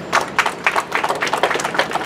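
A small group applauding, with individual handclaps distinct.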